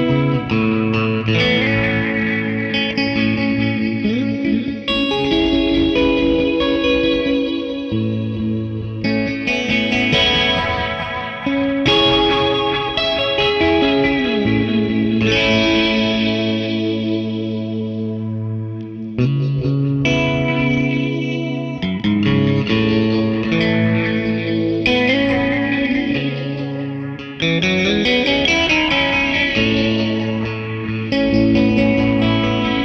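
Electric guitar played through a Meris Polymoon modulation-and-delay pedal set to its barberpole phaser at slow speed, with delay repeats. Sustained chords and single notes ring out, changing every few seconds.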